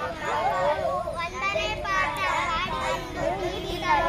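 Children's voices: several young children talking, at times over one another.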